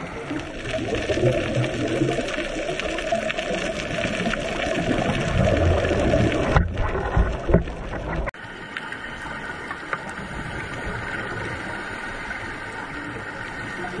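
Underwater noise picked up by a diving camera: a rushing hiss with low rumbling surges of water and bubbles, cutting off abruptly a little past the middle and going on steadier and a little quieter.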